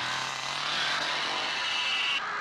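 Two-stroke chainsaw running steadily at high revs, a dense, buzzing engine noise.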